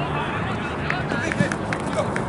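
Football players calling out to each other during play on an outdoor pitch, short shouts over the general noise of the game, with a few sharp knocks, the loudest in the middle.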